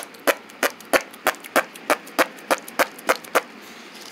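A steady series of short, sharp clicks, about three a second, evenly spaced.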